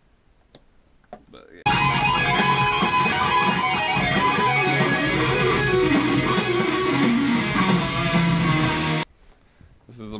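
Electric lead guitar playing a solo line with bent, gliding notes over a fuller backing. It cuts in suddenly about two seconds in and is cut off abruptly about a second before the end.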